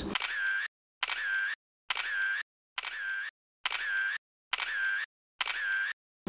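A short camera-shutter sound effect repeated seven times, just under one a second, each one identical and cut off into dead silence before the next.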